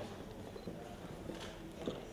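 A few light, sharp clicks or taps at irregular intervals, the clearest two about one and a half and two seconds in, over faint background murmur.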